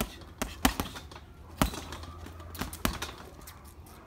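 Boxing gloves punching an Everlast heavy bag: about six or seven sharp hits in irregular clusters, the hardest about half a second and a second and a half in.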